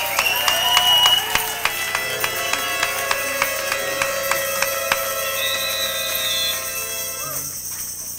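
Congregation's praise music: a tambourine, rhythmic hand-clapping and held pitched sounds, fading out near the end.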